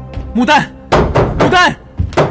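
A fist knocking on a wooden lattice door, several thuds between two loud shouted calls of a name, over background music.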